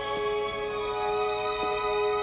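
Slow film-score music with long held notes.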